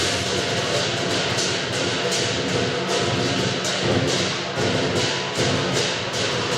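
Chinese dragon dance percussion: a big drum, gong and cymbals played together in a steady beat, with sharp crashes a little over twice a second.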